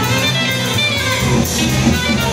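Live band playing an instrumental passage, with guitar and keyboard lines over a steady bass and drums.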